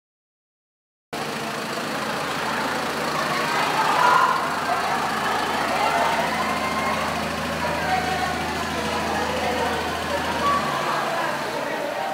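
Delivery truck engine idling with a steady low hum under a crowd's chatter, then cutting off near the end while the voices carry on.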